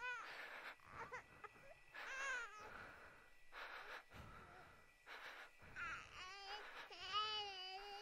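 A baby crying faintly in short, high, wavering wails, the longest near the end, with short breathy noises in between.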